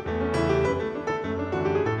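Solo piano played on a Nord Electro 6D stage keyboard: a vanerão, low bass notes alternating with chords and a melody above, struck in a quick, even dance rhythm.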